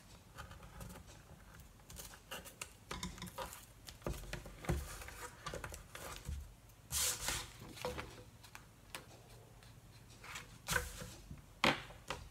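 Backing liner of double-sided tape on card being picked up with a pointed tool and peeled back part way: quiet scratching and small clicks, with two short, louder peeling rips, one past the middle and one near the end.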